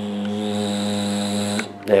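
Camera lens zoom motor whirring steadily as the lens zooms in, stopping abruptly just before the end.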